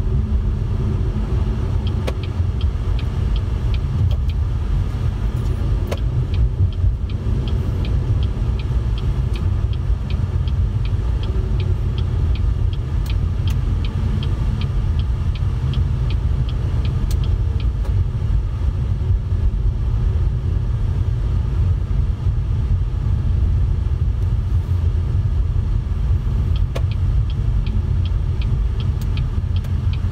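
Car driving, with steady low road and engine rumble heard inside the cabin, and a light, regular ticking through the first two-thirds.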